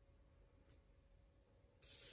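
Near silence: room tone with a faint steady hum, and a brief hiss that starts just before the end.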